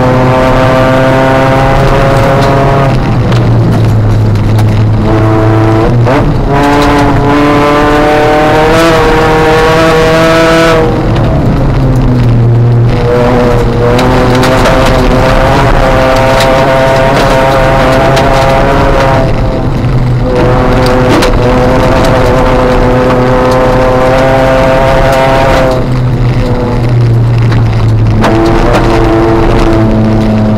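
Ford Fiesta ST150 rally car's 2.0-litre four-cylinder engine heard from inside the cabin under hard acceleration, its pitch climbing and then dropping back sharply about five times at gear changes and lifts.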